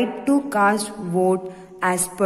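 A woman's voice speaking slowly, drawing out her words as she reads aloud.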